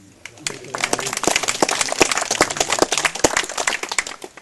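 Audience applauding: dense clapping that builds up about half a second in and tails off near the end.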